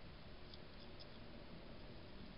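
Wild hedgehog eating: faint small clicks and crunches, a couple in the first second, over a steady low hiss.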